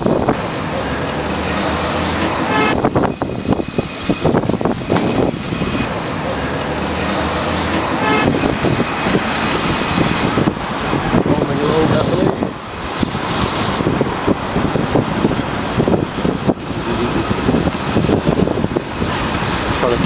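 Street traffic and road noise heard from an open pedicab on the move, with a car passing and wind and handling noise on the microphone.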